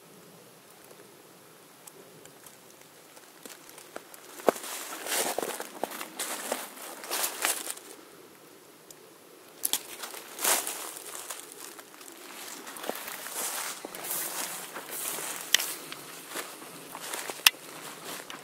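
Footsteps through dry fallen leaves, with irregular crunching and rustling that starts about four seconds in after a quiet opening, plus a few sharper cracks.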